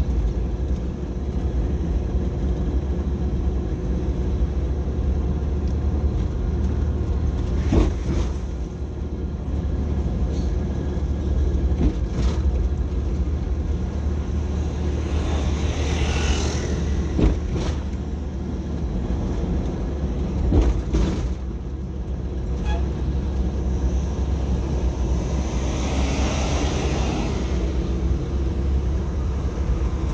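Car driving slowly on a paved street, its engine and tyre rumble steady and low, with a few short knocks and two swells of rushing noise, about halfway through and again near the end.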